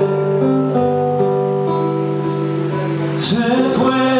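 Acoustic guitar playing an instrumental passage of held, ringing chords and notes, with a short breathy hiss a little after three seconds in.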